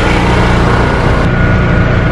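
An engine running steadily, a loud, even low drone.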